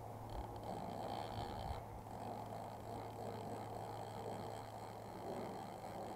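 Steady low rushing noise of a wide, fast-flowing river heard from the bank, with a faint steady high-pitched whine on top, strongest in the first two seconds.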